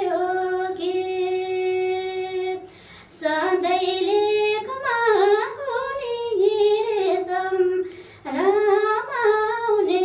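A woman singing solo without accompaniment. It opens on a long held note, breaks briefly about three seconds in, and goes on in ornamented phrases that bend up and down in pitch, with another short break about eight seconds in.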